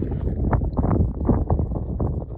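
Wind buffeting the microphone: a low, uneven rumble with irregular pops.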